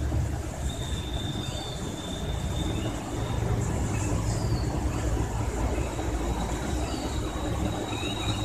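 Steady low background rumble with a thin, steady high whine that comes and goes, and a few faint short chirps; no knocks or taps.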